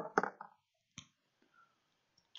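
A brief murmured vocal sound at the start, then two sharp clicks about a second apart as small items are handled on a desk.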